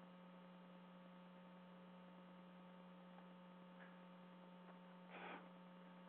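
Near silence with a steady low electrical hum and a few faint steady tones above it. A brief faint noise about five seconds in.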